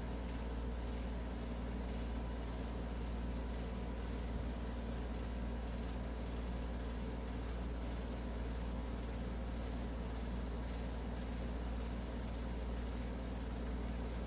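Steady low background hum with a few faint steady tones over it, unchanging throughout; no sound from the canvas tilting is heard.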